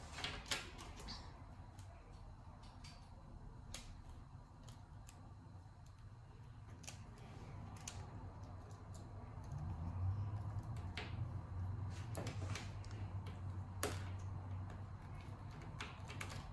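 Faint, scattered clicks and taps of small plastic Mini Brands toy shopping-cart parts being handled and fitted together. A low steady hum comes in about ten seconds in.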